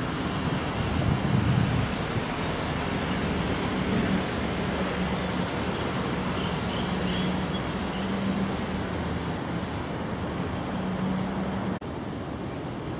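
Steady distant city traffic noise with a faint low engine hum running through it, and a few faint high chirps about six to seven seconds in.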